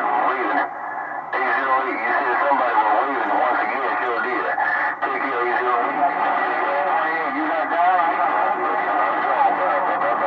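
Voices of other CB stations received on a President HR2510 radio tuned to 27.025 MHz, heard through its speaker with a thin steady tone underneath.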